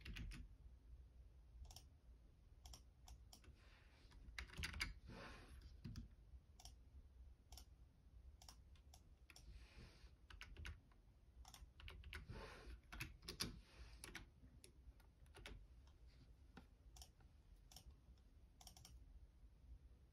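Faint key presses on a Logitech keyboard: irregular clicks bunched into a few short runs of typing, thinning to scattered single taps near the end.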